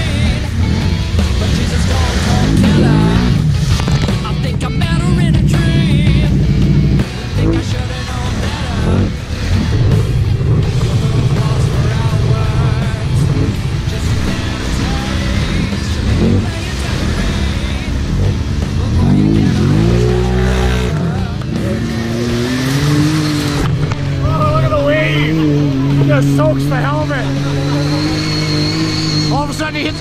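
ATV engines revving up and down, their pitch rising and falling again and again, as the machines drive through shallow lake water.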